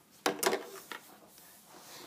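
Brief clatter and rustle of a plastic loom being shifted on a tabletop, with rubber bands on its pins, about a quarter second in, then a small tick and near quiet.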